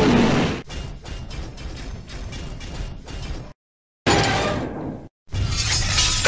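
Dubbed robot-dinosaur roar sound effect ending about half a second in. It is followed by about three seconds of quieter, rapid mechanical clattering, then two short loud crash-and-shatter effects separated by dead silence.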